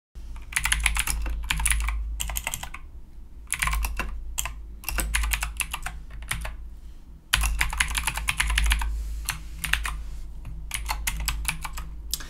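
Typing on a computer keyboard: rapid runs of key clicks in bursts, with short breaks about three seconds in and again about seven seconds in, over a steady low hum.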